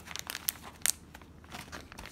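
Ziploc freezer bag being zipped shut by fingers pressing along its seal: plastic crinkling with a few short sharp clicks, the loudest a little under a second in.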